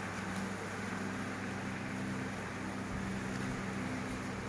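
Steady low background hum and hiss with no distinct events: room tone.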